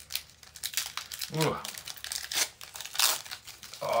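Pokémon card booster pack wrapper being crinkled and torn open by hand, a run of quick crackles throughout.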